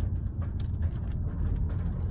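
Car engine and road noise heard from inside the cabin, a steady low hum that eases slightly as the driver comes off the gas and shifts the manual gearbox up from first into second at about 2,000 revs.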